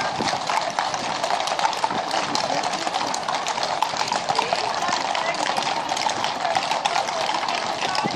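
Many horses walking past on a tarmac road, their hooves making an irregular stream of overlapping clip-clops.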